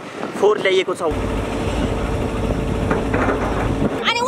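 Heavy earthmoving machinery running, its diesel engine a steady low rumble with a constant hum; it starts about a second in and cuts off suddenly near the end.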